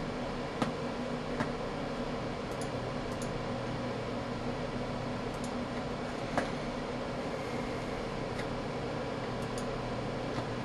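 Steady fan hum and room noise from computer and test equipment, with a few faint computer-mouse clicks, the clearest about six and a half seconds in.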